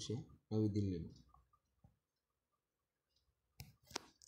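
A man's voice speaks a short phrase about half a second in, followed by near silence. Two sharp clicks come near the end, just as the quiz slide changes.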